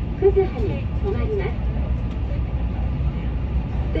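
Steady low rumble of a Keihan train running, heard from inside the carriage.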